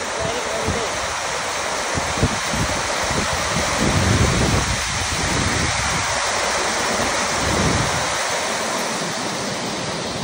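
Heavy rain falling on a corrugated metal roof: a loud, dense, steady hiss, with irregular gusts of wind rumbling on the microphone.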